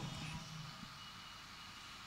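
Faint low rumble and hiss of room tone picked up by a handheld microphone, with the tail of a man's voice dying away in the first half second.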